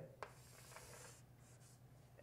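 Faint scratching of a pen being written or drawn with, as points are marked on a diagram, with a light tap about a fifth of a second in. The scratching fades out about halfway through.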